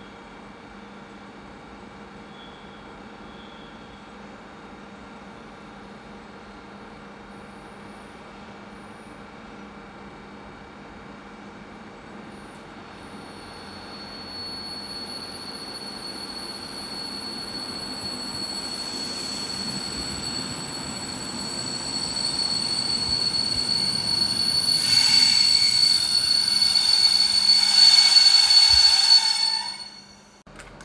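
A passenger train pulls into the station, its rumble growing steadily louder. A steady high-pitched squeal of the braking train sets in about halfway and swells to its loudest near the end, where the sound cuts off abruptly.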